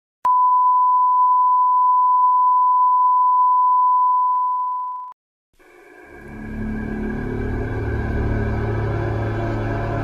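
A single steady high test tone of a film countdown leader, held for about five seconds and cutting off suddenly. After a brief silence, the instrumental intro of a hip-hop track fades in, with deep bass and sustained chords.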